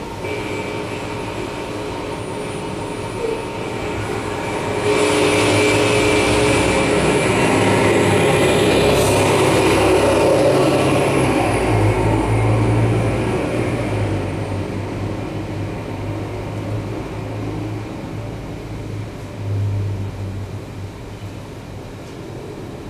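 Live electroacoustic improvisation of field recordings and processed radio: a dense noise drone with a low hum and a thin high whistle. It swells about five seconds in and thins out again after about fourteen seconds.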